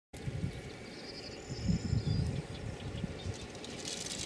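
Wind buffeting the microphone in irregular low gusts, with a bird's thin high chirps faint in the background during the first half.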